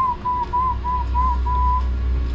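A person whistling to urge a cow along: a quick run of short whistled notes at nearly one pitch, the last held a little longer, over a steady low hum.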